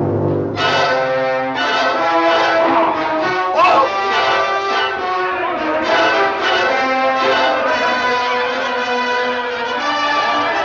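Orchestral film score with brass playing loud sustained chords, entering sharply about half a second in.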